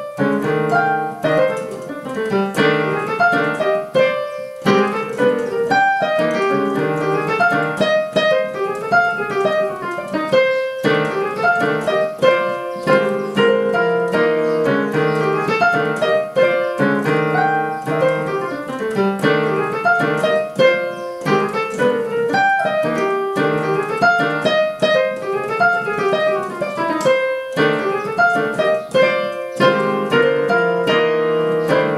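Technics digital piano playing a fast two-handed melody: chords under quick runs of notes that rise and fall, with a few brief pauses between phrases.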